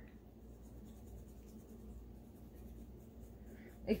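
Faint scratchy rubbing as makeup is worked up from a pan of pressed glitter, over a low steady hum.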